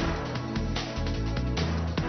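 Instrumental background music with a heavy bass beat and strong accented hits a little under a second apart.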